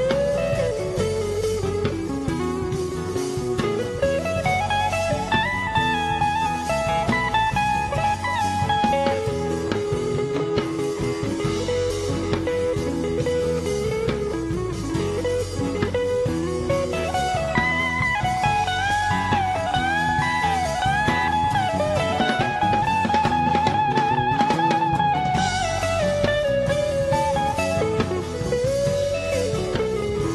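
Live rock band playing an instrumental break: an electric guitar plays a lead line with bent, wavering notes that climbs higher twice, over bass guitar and a drum kit.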